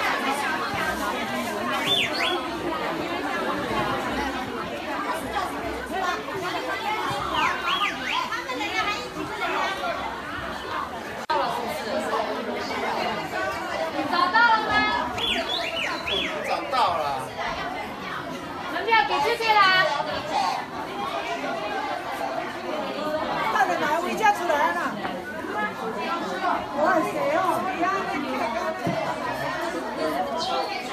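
A crowd of tourists chattering: many overlapping voices at once, with no one speaker standing out for long, and a few higher, louder voices rising above the hubbub around the middle.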